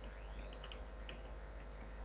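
Computer keyboard being typed on: a quick run of light keystrokes, including a correction of a typo, over a steady low hum.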